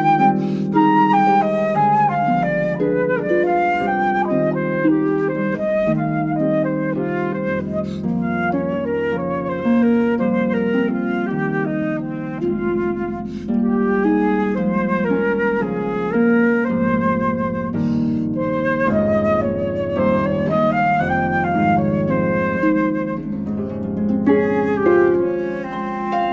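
Concert flute playing a melody with vibrato over a harp accompaniment of plucked chords and bass notes.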